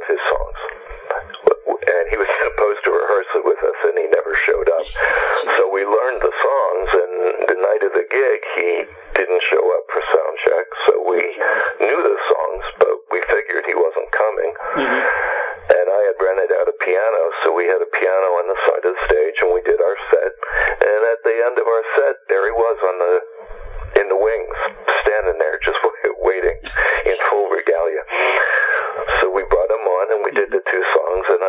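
Speech only: a man talking steadily, the voice thin and narrow as over a telephone line.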